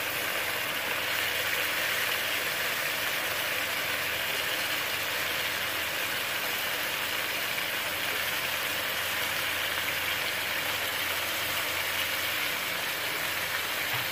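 Tomato-onion masala sizzling steadily in oil in a kadai over a medium flame.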